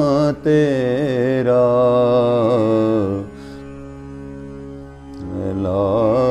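A man singing an Urdu Sufi kalam solo, in long, ornamented held notes with a wavering pitch. The voice drops away about three seconds in, leaving a softer steady held tone, and comes back shortly before the end.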